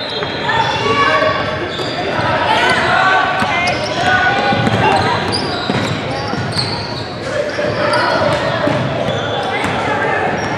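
Basketball game sound in a reverberant gymnasium: players and spectators shouting and calling out over one another, with the ball bouncing on the hardwood floor now and then.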